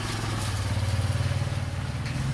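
Motorcycle engine running steadily at low revs, a low even hum with a fast pulse.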